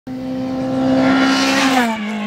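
Skoda rally car's engine at high revs as the car passes close by. The note holds steady and grows louder, then drops in pitch near the end as the car goes past.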